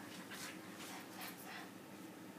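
A puppy whimpering faintly in a few short sounds while play-fighting.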